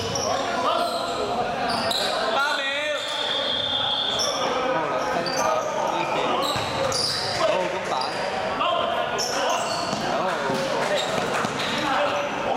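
Basketball game in a large echoing indoor hall: the ball bouncing on the court, sneakers squeaking, and players' voices calling out throughout.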